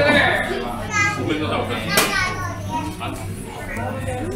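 Indistinct chatter of several people with high-pitched voices calling out, over a steady low hum, and one sharp click about halfway through.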